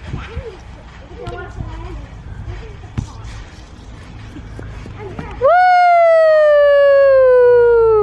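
Faint voices with a single sharp knock about three seconds in. Then, about five and a half seconds in, a loud, high-pitched yell is held for about two and a half seconds: it jumps up in pitch, slides slowly down, and cuts off.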